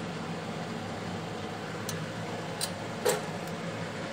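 Steady low hum and hiss of background room noise, with a few faint clicks between about two and three and a half seconds in.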